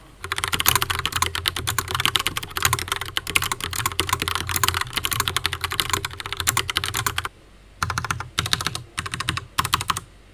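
Typing on a Logitech Pop Keys mechanical keyboard with TTC Brown tactile switches: a fast, continuous stream of key clicks for about seven seconds, a short pause, then several short bursts of keystrokes.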